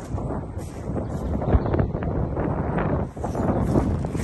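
Wind buffeting the microphone: an uneven rumbling rush that gusts up and down.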